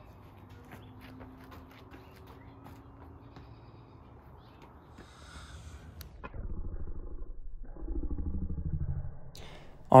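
Faint outdoor ambience with light steps on brick pavers, then from about six seconds in a low, drawn-out growling sound of voices slowed down with slow-motion footage.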